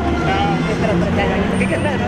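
Street traffic with stopped cars idling close by, a low steady engine rumble, under people talking back and forth at a car window.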